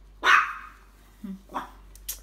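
Shih tzu barking: one loud, sharp bark, then a fainter short bark about one and a half seconds later.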